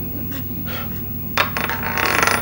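A steady low drone, joined about one and a half seconds in by a metallic jingling rattle that grows louder.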